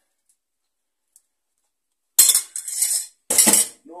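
Stainless steel pan clattering against metal twice as it is put down, about two and three seconds in, bright metallic clanks.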